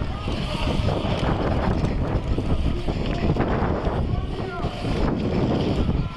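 Steady wind rumble on a handlebar-mounted GoPro HERO3 camera as a BMX bike rolls along, with faint voices in the background.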